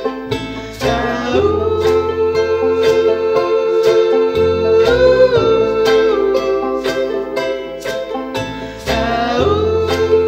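A folk band playing live: plucked strings (banjo and charango) keep a steady picked rhythm over upright bass notes, while voices hold long notes without words. The held notes slide up about a second in and again near the end.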